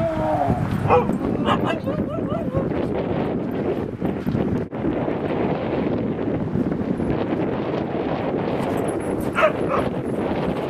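Huskies yipping and whining as they play, a cluster of short calls in the first couple of seconds and another near the end, over a steady background noise.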